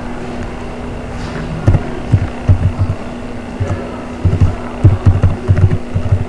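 Computer keyboard being typed on, heard as irregular dull thumps in quick clusters, mostly in the second half, over a steady low electrical hum.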